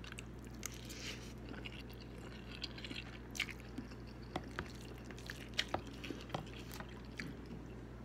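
A person chewing a mouthful of spicy chicken noodles close to the microphone, with soft wet mouth sounds and small sharp clicks scattered through.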